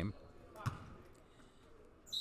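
A single basketball bounce on a hardwood gym floor about two-thirds of a second in, over faint gym room noise.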